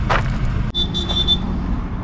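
A single high electronic beep, one steady tone lasting about half a second, starting about three-quarters of a second in, over a steady low rumble.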